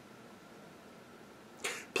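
Quiet room tone during a pause in speech, then a short sharp intake of breath near the end, just before the man speaks again.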